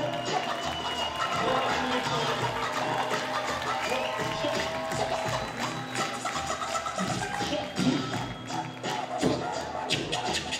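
Live hip hop music through the venue's PA: the DJ's beat playing continuously, with held tones over it.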